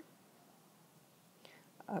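Near silence: room tone, with one faint click about one and a half seconds in, then a woman starts speaking near the end.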